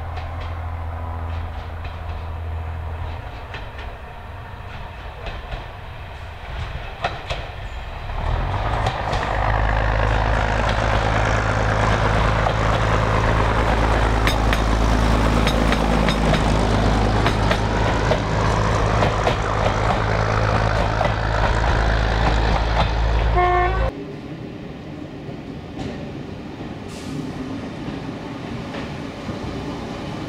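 A vintage diesel multiple unit approaching and then passing close by, its diesel engines droning low and steady and its wheels clicking over the rail joints. It grows loud about eight seconds in and cuts off abruptly near the end, leaving a quieter steady background.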